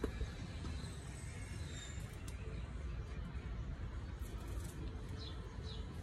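Quiet outdoor background: a low steady rumble with a few faint, brief bird chirps, around two seconds in and again around five seconds in.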